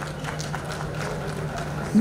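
A steady low hum with faint background voices and a few light taps, between the announcer's lines.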